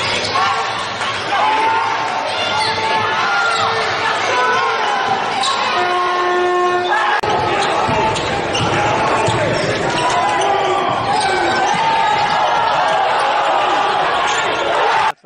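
Basketball game sound in a gym: a ball being dribbled on the court under voices, with a steady horn tone held for about a second around six seconds in. After a sudden cut, a louder, denser crowd noise as fans cheer.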